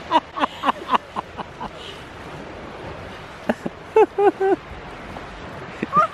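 Short vocal cries from a person: a quick run of them at the start and three more about four seconds in, over a steady hiss of sea and wind.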